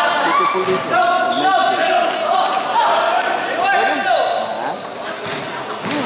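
Basketball bouncing on a hardwood-style gym court during a game, under players' and onlookers' shouting voices, echoing in a large indoor hall.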